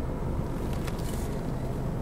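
Steady low rumble inside a car's cabin, with no distinct events.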